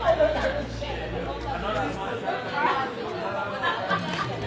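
Several people talking at once, indistinct overlapping chatter, over a low steady hum that fades out about halfway through.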